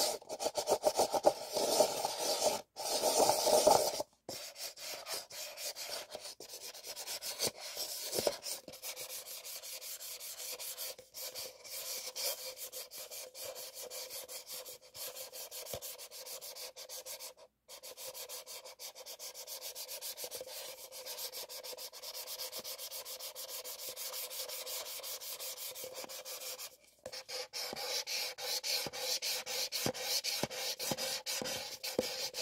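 White paper cups rubbed and twisted against each other by hand: a continuous dry, scratchy papery rubbing. It is louder in the first few seconds and again near the end, with a few brief pauses.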